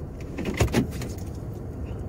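Steady low rumble of a car's engine and road noise heard inside the cabin while driving.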